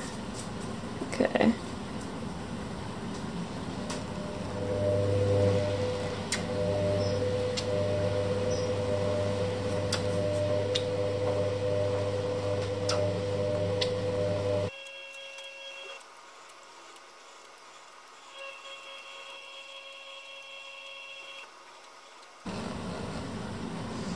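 A steady machine hum starts a few seconds in and cuts off abruptly partway through, leaving a quieter room tone, with a few faint clicks scattered through.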